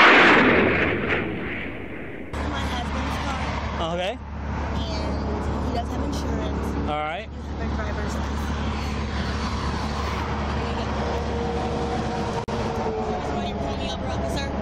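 A loud rush of noise fades over the first two seconds. Then a steady low rumble of vehicle engines and road traffic at a roadside stop sets in, with a couple of brief, faint voice sounds.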